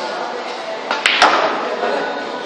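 A pool shot on a sinuca table: the cue tip strikes the cue ball and the balls clack together, a quick run of three sharp clicks about a second in, the red object ball going down.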